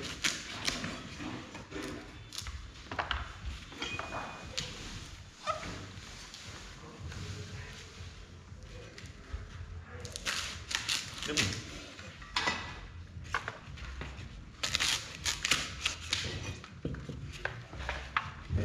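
Kitchen knife trimming dong leaves on a wooden board for bánh chưng, with scattered light taps and clicks of the blade and handling of the leaves, coming in quick clusters about ten seconds in and again near fifteen seconds.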